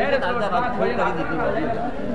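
Crowd chatter: several men talking over one another.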